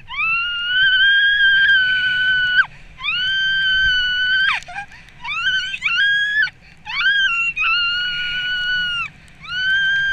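A woman screaming with joy in a series of long, very high-pitched held shrieks, about six of them with short breaks for breath, over a low rumble of wind on the microphone.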